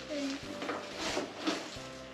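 Cloth rustling in short bursts, about three in two seconds, as a Santa suit is tugged up over an animatronic figure's frame, with faint music underneath.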